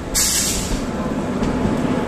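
Passenger train hauled by an electric locomotive rolling past close by: a sudden loud rush of noise as the locomotive comes alongside, fading into the steady rumble of the passing coaches.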